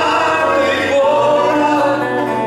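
Two male voices singing a song together, accompanied by two acoustic guitars.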